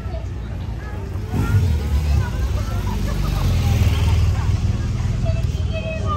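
Street crowd chatter over the low rumble of a car engine, which swells about a second in and stays loud.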